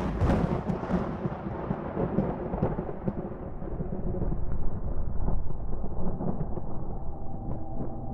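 A deep, rolling, thunder-like rumble with crackles, its hiss slowly dying away. Near the end, steady ringing tones start to come through it.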